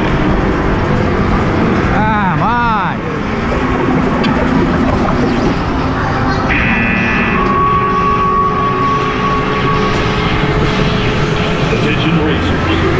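Go-kart ride heard from the driver's seat: the kart and its tyres running on an indoor track with a loud, steady rumble. There is a brief wavering whine about two seconds in and a steady high tone later on.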